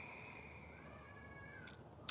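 A faint, high-pitched, drawn-out animal call that rises and falls over about a second in the second half, over a thin steady high tone.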